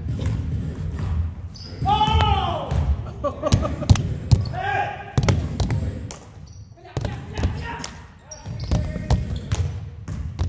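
Indoor basketball play: a basketball bouncing on a hardwood gym floor with sharp, repeated thuds, mixed with sneaker squeaks and indistinct players' calls echoing in the hall.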